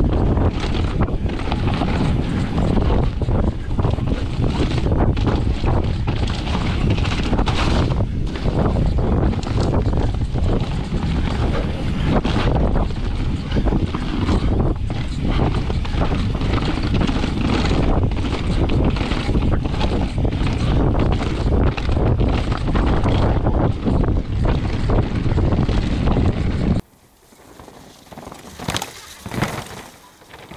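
Wind rush on a bike-mounted camera microphone with the rattle and knocking of a downhill mountain bike at speed over a rough dirt trail: tyres on dirt and the bike jarring over bumps. The loud noise cuts off suddenly near the end, leaving faint outdoor sound.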